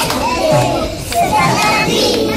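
A group of young children's voices talking and calling out at once, overlapping, with a soft low beat pulsing underneath.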